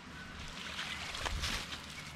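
A mesh yabby trap being pulled up out of a creek on its rope, with faint splashing and water draining from it.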